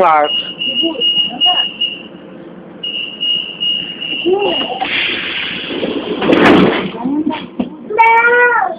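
Lisbon Metro ML90 train's door warning signal: a high, rapid beeping in two stretches of about two seconds each. It is followed by a loud rush of noise lasting about two seconds.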